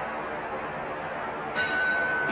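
Crowd noise, then about one and a half seconds in a single steady high bell tone starts: the ring bell ending the round.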